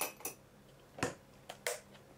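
A handful of light, sharp clicks and taps from a metal spoon against a glass bowl, the first with a brief ringing note.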